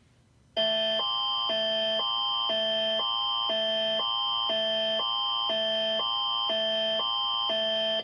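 Canadian Alert Ready emergency attention signal playing from a television: a loud multi-tone alarm that switches back and forth between two tones about twice a second, starting about half a second in, signalling a national test of the emergency alert system.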